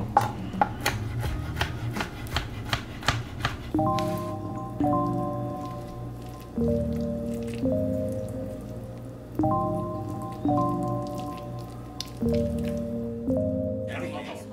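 A knife chopping smoked salmon on a cutting board: a quick, uneven run of strokes over the first few seconds. Background music with sustained chords then takes over.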